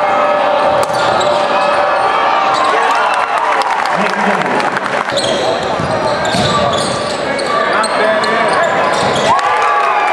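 Live basketball game sound in a gym: a crowd talking and a basketball bouncing on the hardwood, with a short laugh about halfway through.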